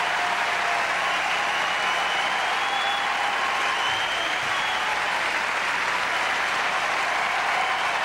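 A large concert-hall audience applauding steadily.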